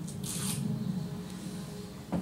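Steady low background hum, with a brief rustle of handling about a quarter to half a second in.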